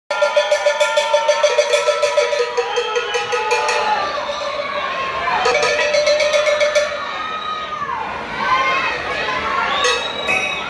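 Salsa music opening with cowbell strokes at about four a second over held tones for the first four seconds, while the audience shouts and cheers through the rest.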